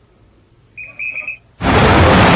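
News broadcast transition sound effect: two short high electronic beeps, the second a little longer, then a sudden loud rush of noise like an explosion starting about a second and a half in.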